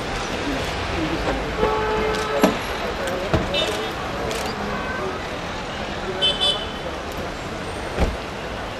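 Street traffic noise with a car horn sounding for about a second, around two seconds in, a few short clicks and knocks, and scattered voices around a car.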